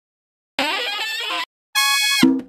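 A short, wavering saxophone squeal from a funk sample loop, heard on its own, then after a brief gap a steady held note begins near the end.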